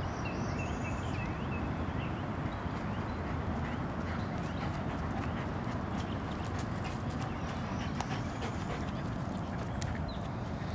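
Steady low rumble of outdoor noise on a handheld camera's microphone. A few short bird chirps come in the first two seconds, and scattered light taps follow through the rest.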